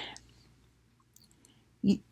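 A woman's voice trails off, then a pause holding a few faint small mouth clicks before she speaks again near the end.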